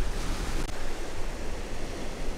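Large lake waves breaking and washing over a rocky cobble shore: a steady rushing surf noise, with a low rumble of wind on the microphone underneath.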